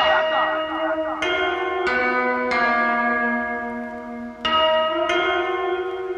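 Bell-like chimes in a beatless, voiceless passage of a rap track: about six struck notes, roughly a second apart, each ringing on into the next.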